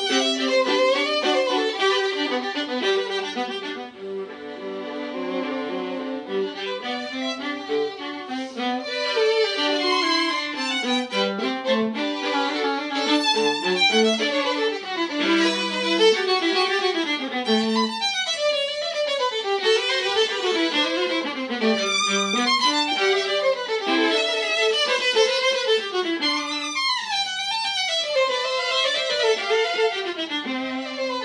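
Violin and viola playing a bowed duet in fast runs of notes that rise and fall.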